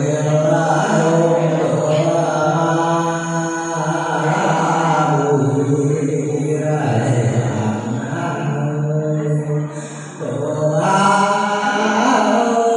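A man singing a Mường folk song of the giao duyên (courting exchange) kind through a microphone and loudspeaker, in long, slowly wavering chant-like notes, with a short break for breath about ten seconds in.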